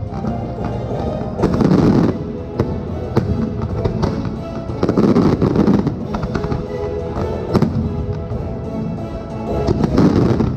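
Fireworks going off in repeated sharp bangs and crackling bursts, with louder swells of noise about one and a half and five seconds in, over the show's music playing.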